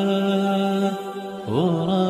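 Arabic nasheed sung by a voice holding a long steady note, dipping briefly, then sliding up into another held note about one and a half seconds in.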